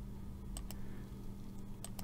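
A few faint, separate computer mouse clicks over a steady low hum.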